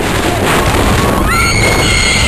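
Wooden roller coaster train rumbling and clattering along its wooden track, with a shrill, high-pitched scream from a rider starting about one and a half seconds in and held.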